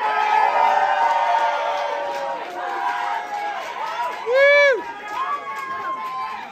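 Audience cheering and whooping, many voices at once, with one loud whoop rising and falling in pitch about four and a half seconds in.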